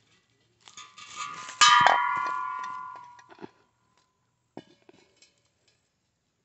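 Steel refrigerant gas cylinder bumped while being handled: a short scrape, then one loud metallic clang that rings and fades over about two seconds, followed by a few faint clicks.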